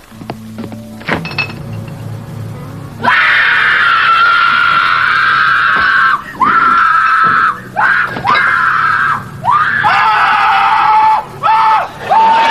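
A person screaming: long, high, held screams start about three seconds in, each lasting a second or more and broken by quick gasps, and drop lower in pitch near the end. Before them there are only quiet low sounds and a few knocks.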